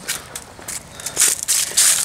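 Several short rustling scrapes in grass and dry fallen leaves.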